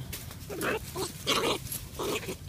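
A series of short animal calls, five or six in quick succession.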